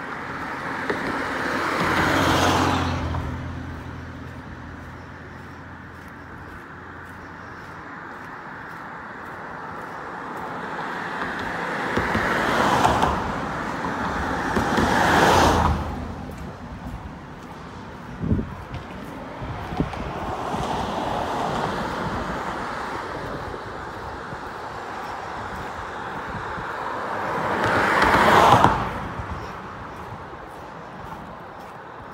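Road traffic passing close by on the bridge roadway: four cars go by one at a time, each a rising and falling rush of tyres and engine. The first passes with a low engine hum, two more pass close together in the middle, and the last passes near the end.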